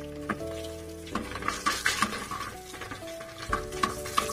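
Sliced onions sizzling in hot mustard oil in a pressure cooker, stirred with a metal ladle that scrapes and clicks against the pot now and then.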